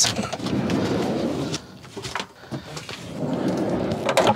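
Sliding side door of a Citroën Jumper van rolling along its track, a rumble of about a second and a half that stops abruptly; a second, similar stretch of rumbling noise follows in the latter half.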